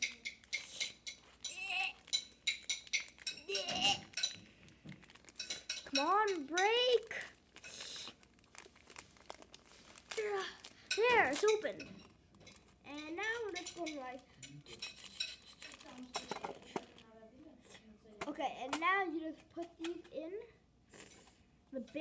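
Hard plastic toy blaster parts clicking, tapping and rattling against each other as they are handled and fitted together, many small sharp clicks throughout. A child's voice hums or makes wordless sounds several times between them.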